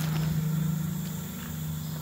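Steady low hum of the idle car wash equipment in the bay, with a faint rustle near the start as the foam cloth brush strips are handled.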